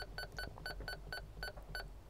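Uniden UM380 marine VHF radio giving a rapid run of identical short key beeps, about four a second, each beep marking one step of the channel-down button through the weather channels. The beeps stop just before the end.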